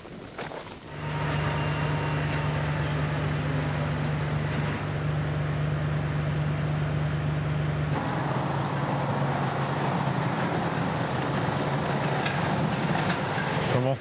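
Steady low engine hum of heavy machinery running at a green-waste recycling site, starting about a second in and shifting slightly in character about eight seconds in.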